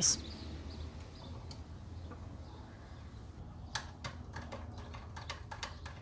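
Light, irregular metallic clicks and ticks from a hand deburring tool working the tommy bar holes of a small steel thumb-screw knob. The clicks start a little past halfway, over a low steady hum.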